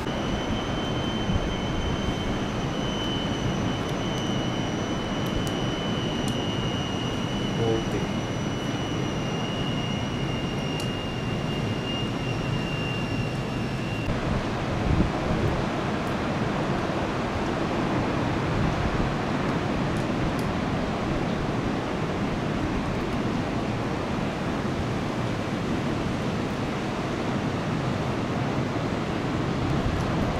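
Steady, even rush of surf breaking along a long beach. A faint high thin whine, falling slightly in pitch, runs over it through the first half and cuts off about halfway.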